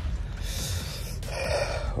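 A man's sharp breath in, then a breath out, close to the microphone, over a low steady rumble.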